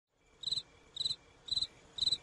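Cricket chirping: short trilled chirps, each a few quick pulses, repeating about twice a second from about half a second in.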